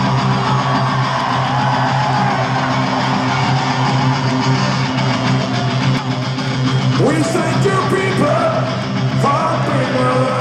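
Live rock band playing through a concert PA, electric guitar to the fore over a steady bass, with singing coming in about seven seconds in.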